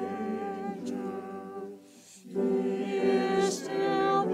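A small church choir singing, holding sustained notes, with a short break between phrases about two seconds in.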